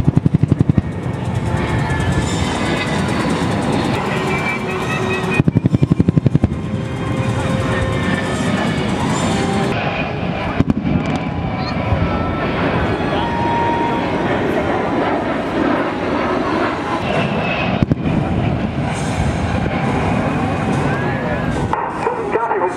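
Air show pyrotechnic blasts and aircraft noise under indistinct loudspeaker voices, with two short bursts of rapid rattling, one at the very start and one about six seconds in.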